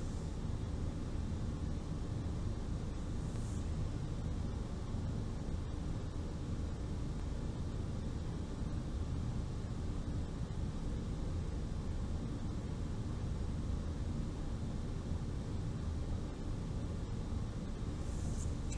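Steady low background noise with no distinct events: the room tone of the recording, with a low rumble.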